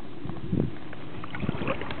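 Hands rustling through dry grass and probing a muddy eel hole, with two short bouts of rustling and scraping about half a second and a second and a half in, over a steady background hiss.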